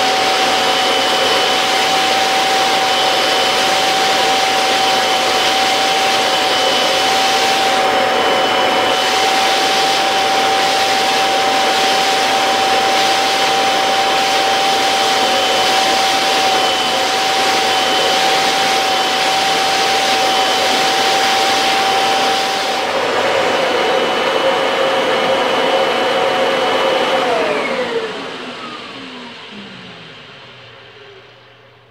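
Two vacuum cleaner motors, an Electrolux UltraFlex and a Kirby G2000 Gsix, running together with a loud, steady whine while their hoses draw against each other through a short piece of pipe. About 23 seconds in one motor cuts out. A few seconds later the other is switched off and winds down, its whine falling in pitch as it fades.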